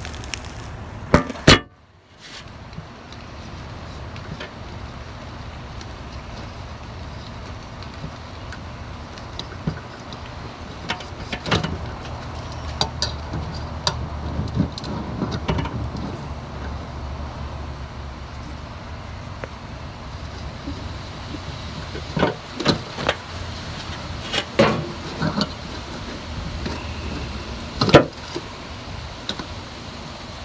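Steady low rumble of outdoor background noise, broken by scattered short knocks and clicks: a loud pair about a second in, then more near the middle and toward the end.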